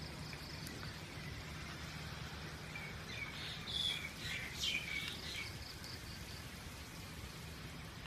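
Light, steady rain, easing but still falling. A bird chirps several times in quick succession between about three and five and a half seconds in.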